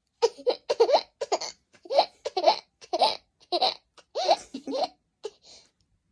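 A toddler laughing in a long run of short, high-pitched giggles, about a dozen bursts over five seconds.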